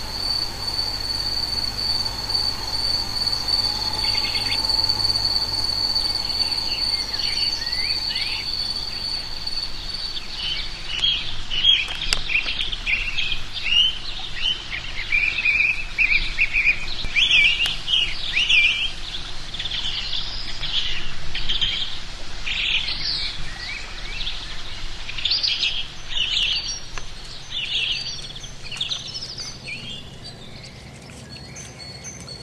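A small bird calling in a quick run of short, repeated chirps from about eleven seconds in to the end. Before that, a steady high insect trill that stops around ten seconds in.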